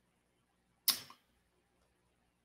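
A single brief noise over a video-call headset microphone, lasting about a quarter second a little under a second in, with dead silence on the gated line around it.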